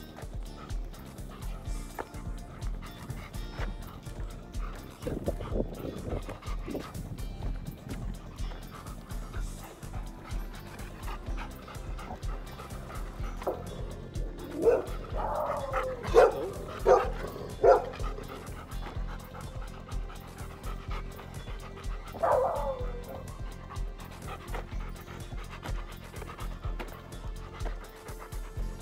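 A dog barking: a quick run of about five barks a little past the middle, then one more bark a few seconds later, over background music with a steady beat.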